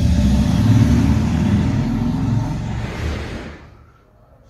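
A passing road vehicle: a loud, steady rumble that fades away near the end.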